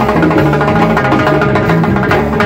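Live Latin rock band playing: timbales, congas and drums over a stepping bass line and sustained melodic instruments.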